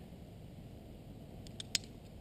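Low outdoor background with a few short, light clicks near the end, as climbing rope and gear are handled while a hitch is undone.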